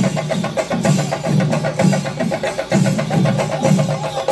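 Kerala folk percussion ensemble of the kind that drives Pulikali (chenda, thakil, udukku) playing a fast, steady rhythm. Rapid sharp strokes ride over heavier deep beats about twice a second.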